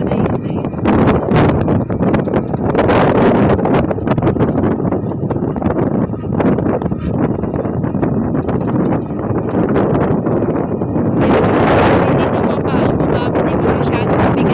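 Wind buffeting the phone's microphone in gusts, strongest around three seconds in and again near the end, with rustles and knocks from the phone being handled.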